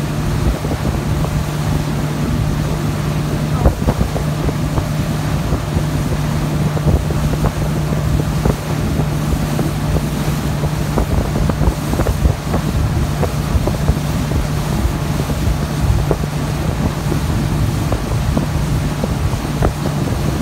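Motorboat engine running steadily at towing speed, a constant low drone, with wind buffeting the microphone and the wake churning behind the stern.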